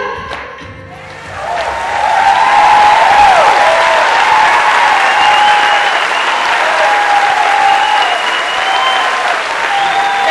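Audience applauding at the end of a song, swelling in about a second in and holding strong.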